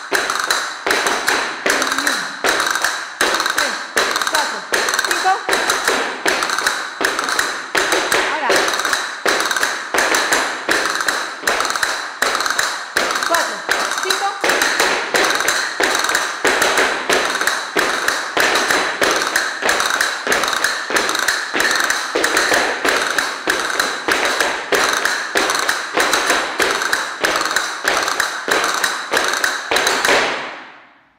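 Several flamenco dancers playing castanets together with heeled-shoe footwork on a wooden studio floor: a steady, rapid run of clicks and heel taps.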